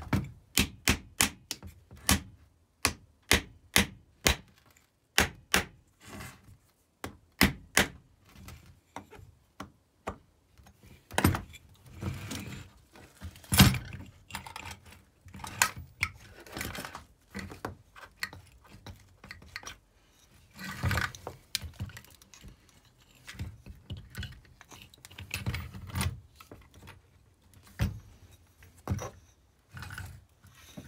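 Sharp metal taps, about two a second, then after about ten seconds more scattered knocks and scraping as tools work the end cover loose from a small electric motor's metal housing.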